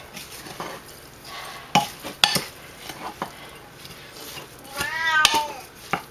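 Wooden spoon stirring crumbled tofu in a glass bowl, with a few sharp knocks of the spoon against the glass. About five seconds in, a cat meows once, rising then falling in pitch.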